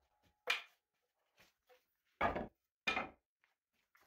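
Three short wooden knocks, the first alone and the last two close together, as cut pieces of 2x6 lumber are handled and set down, with near silence between them.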